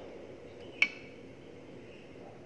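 A single sharp clink of a metal spoon against a frying pan, about a second in, over a faint steady hiss.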